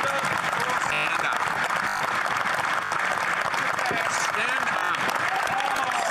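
A crowd of members of parliament applauding steadily, with many voices shouting and cheering over the clapping.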